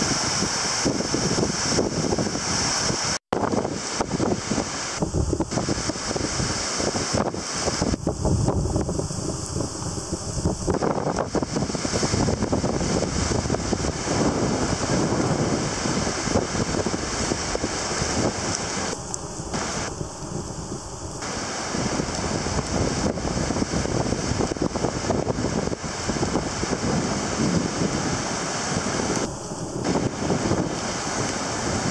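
Strong wind buffeting the microphone, with surf breaking on the beach, broken by a very short gap about three seconds in.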